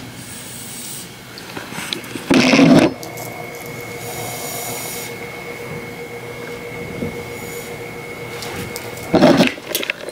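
Velvet closet curtains being pushed along their rod, two short scraping rushes, one about two and a half seconds in and one near the end, with a steady hum and faint high whine in between.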